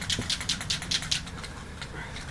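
Rapid, irregular light clicking, about eight clicks a second, thinning out after about a second, over a faint low hum.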